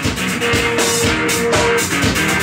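Live blues-rock band playing between sung lines: drum kit beating with guitar, one note held for about a second and a half.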